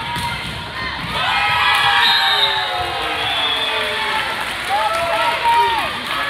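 Spectators and players cheering and shouting together in a sports hall during a volleyball point, getting louder about a second in.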